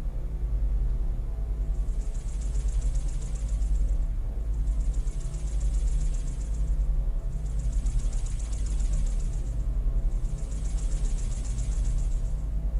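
Ambient sound of a screened film: a steady low rumble, with a high buzzing hiss that swells and fades four times, about every three seconds.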